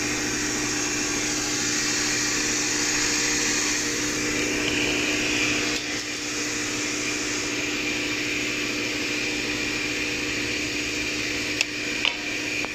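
XY-OQ-7000K two-deck napkin paper folding machine running steadily: a continuous mechanical running noise with a low steady hum. A single sharp click near the end.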